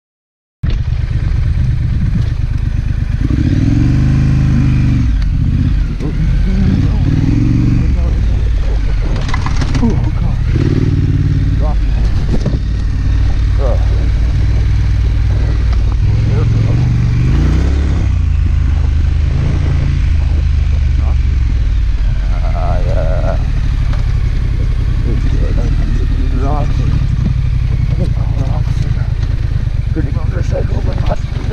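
A 2019 Triumph Scrambler's parallel-twin engine running under way on a dirt and rock track, its revs rising and falling with the throttle, starting about half a second in.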